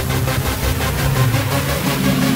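Electronic background music with heavy bass.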